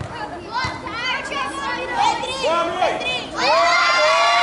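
A group of children shouting and calling out in high voices. A louder, longer shout from several children together starts near the end.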